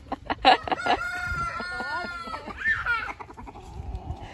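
Rooster giving a few short clucks, then crowing once about a second in: a long held call lasting over a second, with a shorter call near the end.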